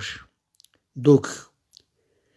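A man's voice speaking Armenian: a phrase trails off, a single short word comes about a second in, and faint short clicks fall in the pauses either side of it.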